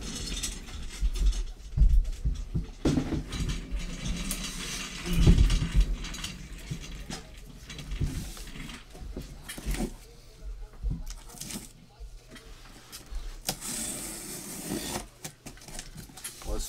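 A cardboard shipping case being handled and shifted on a tabletop: irregular thumps, the loudest about five seconds in, with scraping, clicking and rustling between.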